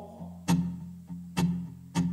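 Acoustic guitar played in a gap between sung lines: three strums, with low notes ringing on between them.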